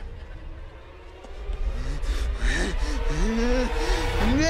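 Dance music with a heavy bass beat. From about halfway in, a young man makes wavering, sliding mouth noises through pursed lips.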